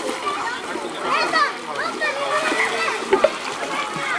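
Many children's voices calling and chattering over water splashing in a shallow wading pool.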